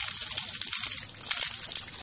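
Water from a garden hose splashing and spattering as a black bear bats at the stream with its paws, with a brief lull a little after a second in.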